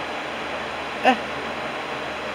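A steady rushing hiss of background noise, with a short spoken "uh" about a second in.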